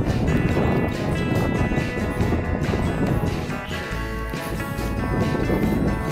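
Background music with sustained tones held steadily throughout.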